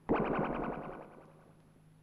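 Electronic synthesizer sound effect: a sudden, rapidly pulsing buzzy tone, about twenty pulses a second, that fades away within about a second and a half. It accompanies an animated atom emitting a quantum.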